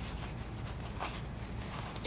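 Cotton quilting fabric rustling faintly as hands fold and handle the pieces, with a slightly louder rustle about a second in, over a low steady hum.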